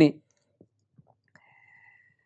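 A man's voice ends a phrase right at the start, then a near-silent pause holds only a few faint, scattered clicks and a faint high steady tone in the second half.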